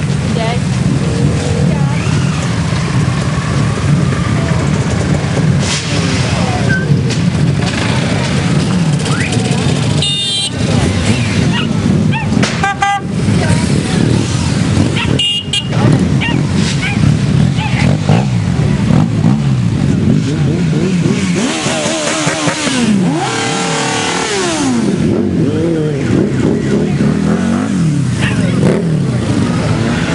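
A column of motorcycles riding past one after another, engines running and revving. Around three-quarters of the way through, several engine notes drop in pitch as bikes go by.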